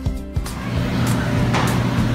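Background music with a steady beat, giving way about half a second in to a steady low hum and rushing air from an inflatable's electric air blower.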